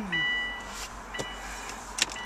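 Car interior warning chime beeping about once a second, each beep a steady half-second two-note tone, with a few faint clicks.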